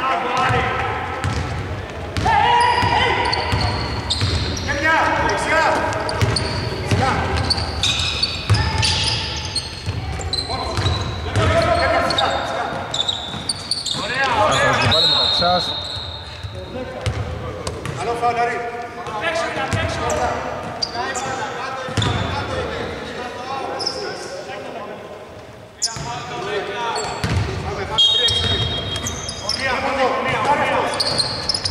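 Basketball game sounds in a large, near-empty sports hall: the ball bouncing on the hardwood court amid players' voices calling out.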